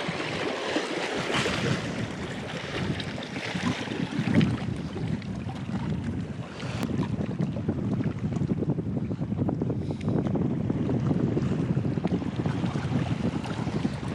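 Wind buffeting the microphone, with small waves lapping against shoreline rocks.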